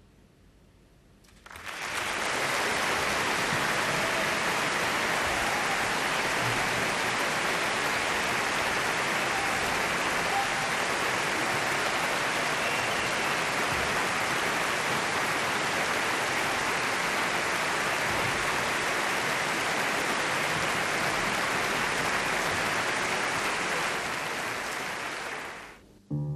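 Large audience applauding in a concert hall. The applause begins suddenly about a second and a half in, holds steady, and breaks off shortly before the end.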